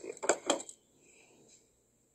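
A few sharp clicks and rustles from the camera being handled and moved, in the first half-second or so as a man's speech trails off, then only faint sound.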